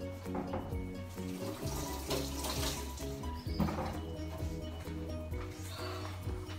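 Kitchen tap running with water splashing as a piece of fruit is rinsed under it, over background music with a steady bass line.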